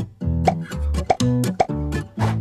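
Light background music with plucked, guitar-like notes, with three short rising plop sound effects about half a second apart.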